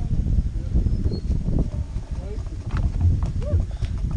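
Irregular hollow knocking and rattling of loose wooden bridge planks as a bicycle is moved across them on foot, with faint voices in the background.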